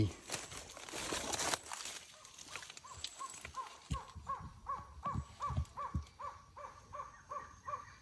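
A trogon calling: a long, even series of short repeated notes, about three a second, starting about three seconds in. Before it there is a brief rustle, and a few low thumps fall among the notes.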